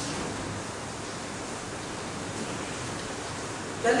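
Steady, even background hiss of room tone, with no distinct event in it.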